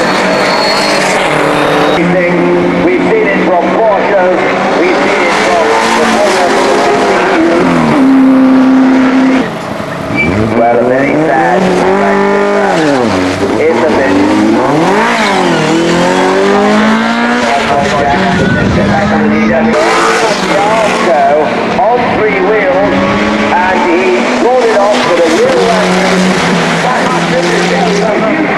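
Racing touring cars passing one after another, their engines revving hard with pitch climbing and falling through gear changes and braking for the corners. The level dips briefly about nine seconds in.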